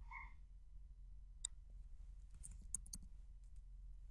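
Faint computer keyboard and mouse clicks over a low steady hum: a single click about one and a half seconds in, then a quick run of clicks between two and a half and three seconds in. A short faint beep sounds right at the start.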